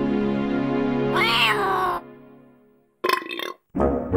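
Cartoon soundtrack music holding a chord, with a short character vocal sound that rises and falls in pitch about a second in. The music dies away, and two short noisy bursts follow near the end.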